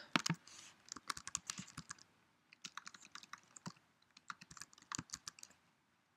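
Faint typing on a computer keyboard: quick runs of key clicks in four bursts with short pauses between them.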